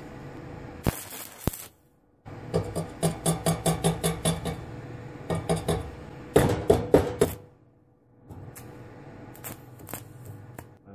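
Stick-welding arc from a Selco Genesis 140 inverter welder crackling and popping as the electrode burns against steel plate. The arc goes out twice, about two seconds in and again near eight seconds, and is struck again each time.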